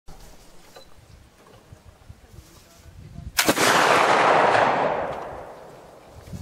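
A single shot from a black powder muzzleloading rifle about three and a half seconds in, with a long, loud report that rolls on and fades over about two seconds.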